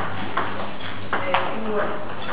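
Celluloid/plastic table tennis ball clicking sharply off bats and the table during a rally, a quick series of about four hits.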